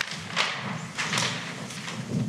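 Large paper plan sheets rustling and crinkling as they are flipped over on an easel, with dull thumps from a handheld microphone being handled. The rustling comes in bursts, one about half a second in and a longer one about a second in.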